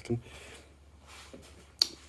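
A plastic bottle of detailing product being set down on a hard surface: one sharp click near the end.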